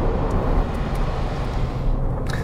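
Land Rover Discovery 3 with its 2.7-litre turbo-diesel driving past on a wet road: tyre hiss and engine sound growing louder as it nears.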